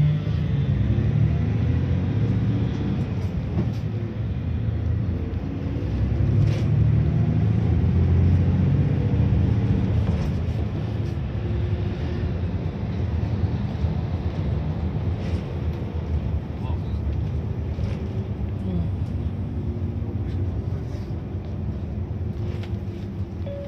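Engine and road noise of a vehicle heard from inside it, a steady low rumble that swells for a few seconds in the middle as it pulls away.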